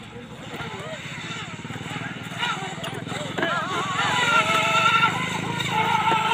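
An electric RC speedboat's motor whine growing louder as the boat runs across the lake, with a steady higher whine clearest in the second half. People talk in the background.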